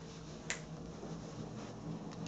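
A single short, sharp click about half a second in, over a faint steady hum.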